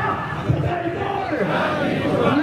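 A large crowd of men shouting a slogan together.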